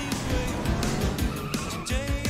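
Music with cartoon race-car sound effects: a car engine and skidding tyres, thickest in the first second and a half.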